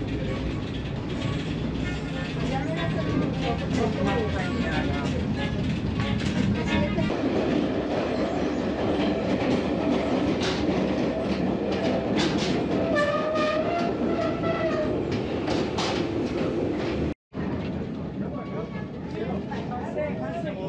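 El Chepe passenger train running along the track: a steady rumble with scattered clacks from the wheels, and voices faintly in the background. The sound breaks off for a moment near the end.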